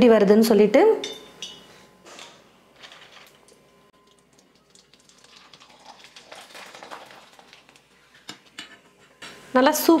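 Faint clinks of a perforated steel skimmer against a kadai of hot oil, with a faint sizzle from the oil.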